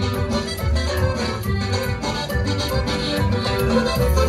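A live band playing lively Latin dance music, with an electric bass guitar pounding out strong repeated low notes under other instruments and a steady beat.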